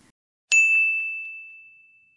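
A single bell-like ding: one sharp strike about half a second in, ringing at one clear high pitch and fading away over about a second and a half.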